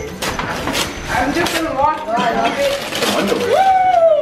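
Gift wrapping paper being torn open by hand in a quick series of rips, with voices murmuring, and an excited "Woo!" near the end as the gift is uncovered.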